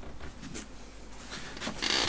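Scattered light clicks and rustling of a person moving about, then a louder rustle of clothing and chair near the end as he sits down in a gaming chair.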